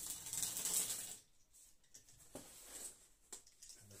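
Makedo roller, a small toothed wheel, rolled under pressure along corrugated cardboard, perforating a score line for a fold. It gives a ratchety scrape for about the first second, then fainter rubbing and a single click.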